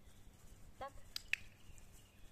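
Dog-training clicker pressed once, a sharp double click-clack a little over a second in, the usual marker that the dog has done right and a treat is coming.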